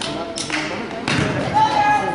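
Basketball thumping twice on a gym floor or backboard, about two thirds of a second apart, amid voices in the hall.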